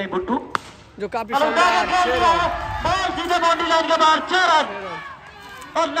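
A single sharp crack of a cricket bat striking the ball about half a second in, followed by several seconds of loud, excited shouting from men at the ground celebrating the hit.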